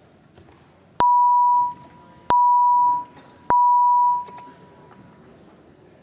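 Three electronic beeps at one steady pitch, about a second and a quarter apart, each lasting under a second: the chamber's voting-system tone signalling that the roll-call vote is open.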